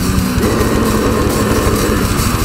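Death metal band playing live: heavily distorted electric guitars and bass over fast, dense drumming, with growled vocals.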